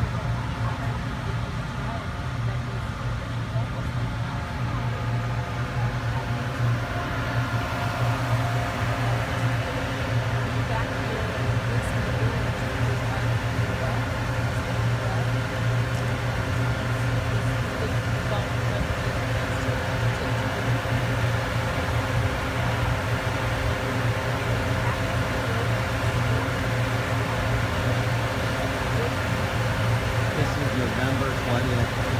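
Passenger ferry under way: a steady low engine drone with a constant hum and several steady tones over it, and water rushing past the hull.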